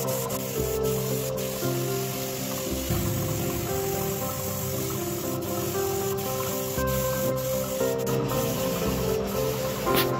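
Steady hiss of a compressed-air gravity-feed paint spray gun spraying, with a few brief breaks, over background music.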